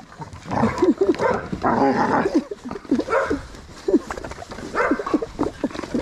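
Pit bulls whining in short, repeated high notes as they crowd around a person in greeting.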